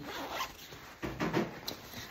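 Zipper on a nylon handbag being pulled open in two strokes about a second apart.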